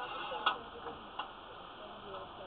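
Three sharp clicks over faint voices. The first and loudest comes about half a second in, and two lighter ones follow within the next second.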